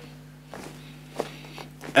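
A pause in a man's speech: a steady low hum under quiet room tone, with a single short click a little after a second in.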